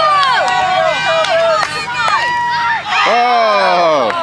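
Overlapping high-pitched shouts and calls from young children and sideline spectators during a youth soccer game, with no clear words. A longer falling shout comes near the end.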